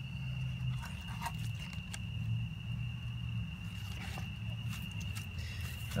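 Night ambience: a steady, high insect trill over a low steady hum. A few light clicks and rustles come from the compost bin being handled.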